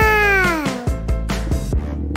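Upbeat background music with a steady beat. Over it, near the start, one short voice-like call that rises and then falls in pitch, like a meow.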